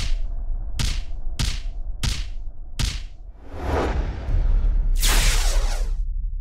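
Punch sound effects: five sharp thwacks about three-quarters of a second apart, then two whooshing swells, the second the loudest, near the end over a deep rumble.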